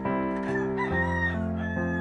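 A rooster crowing over soft piano background music, with one long crow about half a second in and another starting near the end.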